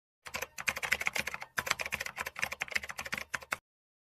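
Typing sound effect of rapid computer-keyboard key clicks, with two brief breaks, stopping abruptly shortly before four seconds in.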